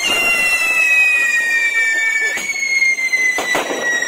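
Diwali fireworks whistling: two steady high whistles slowly falling in pitch over a fizzing hiss, one of them stopping about two and a half seconds in, with a few sharp cracker bangs near the end.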